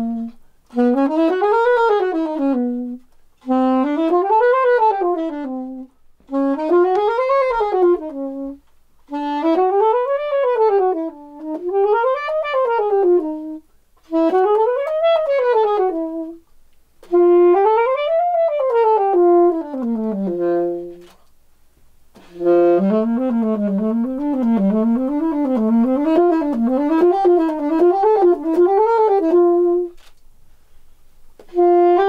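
Solo alto saxophone playing a string of up-and-down scale runs, each rising and falling over about two seconds with a short break between, seven in a row. After a brief pause it plays a longer passage of quick up-and-down figures.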